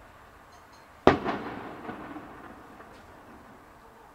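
Aerial firework shell bursting: one sharp bang about a second in, followed by a rumbling echo that fades over the next couple of seconds, with a few faint pops after it.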